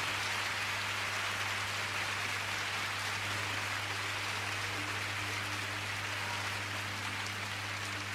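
Audience applauding steadily at the end of a live song performance, a dense even clatter of clapping over a low steady hum.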